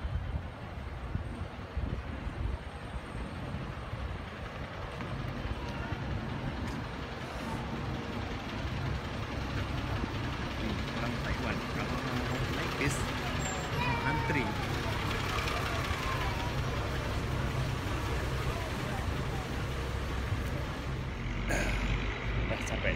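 Street traffic with a bus engine running close by, a steady low rumble that grows heavier partway through, and people talking in the background.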